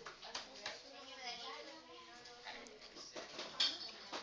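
Faint voices of people talking in a classroom, with a few light knocks near the end.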